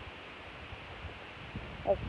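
Steady outdoor background hiss with faint low bumps, typical of a phone camera carried on foot across a yard.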